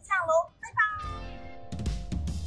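Two short, high-pitched sing-song vocal sounds from a woman, then background music starts about a second in and gets louder near the end.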